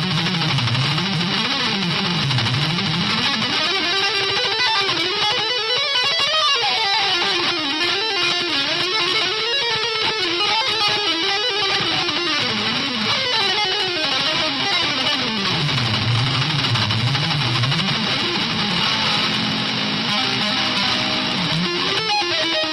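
Instrumental guitar music, the guitar playing fast runs that climb and fall again and again over a dense, steady backing.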